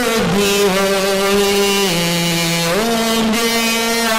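A man's voice chanting in long, drawn-out held notes through a microphone. About halfway through, the pitch steps down for under a second and then returns.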